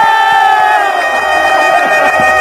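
Cricket crowd shouting and cheering, several voices holding one long high note that sags slightly in pitch.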